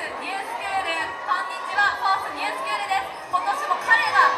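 Indistinct chatter of many people talking at once in a large, echoing hall, with women's voices among them.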